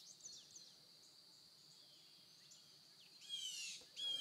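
Songbirds faintly chirping, then one louder phrase of quick repeated high notes near the end.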